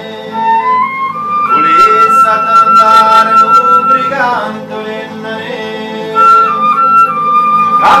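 Transverse flute playing a melody over a strummed acoustic guitar. The flute climbs in steps in the first second or so, holds a long high note until about four seconds in, then holds another near the end.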